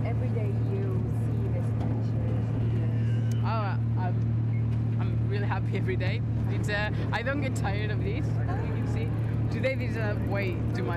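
Amphibious tour boat's engine running with a steady low hum, with people's voices over it.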